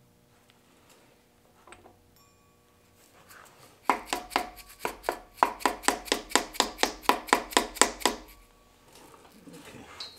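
An orange rubber mallet taps an ATI Super Damper crankshaft pulley about twenty times in quick, even succession, four or five blows a second, starting about four seconds in. It is driving the damper onto the crankshaft snout, whose clearance is super tight.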